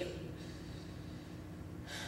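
Quiet room tone through stage headset microphones: faint steady hiss and hum, with a short breath drawn near the end.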